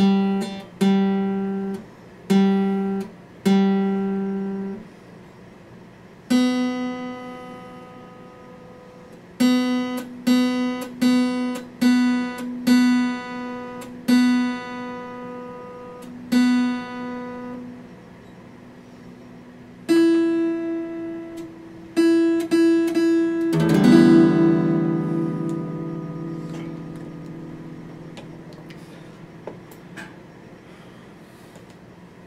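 Steel-string acoustic guitar played with a pick: short phrases of single plucked notes, each ringing briefly, separated by pauses. Later one louder full chord is struck and left ringing, fading slowly away.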